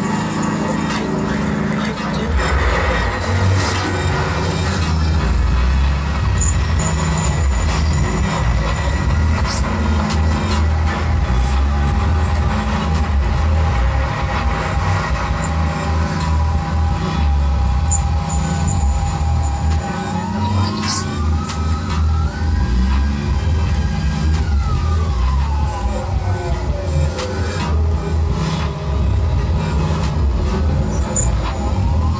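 Live experimental electronic pop with a deep, pulsing fretless-bass line under steady held electronic tones. About two-thirds of the way through, one tone glides up like a siren, holds for a couple of seconds, then slides back down.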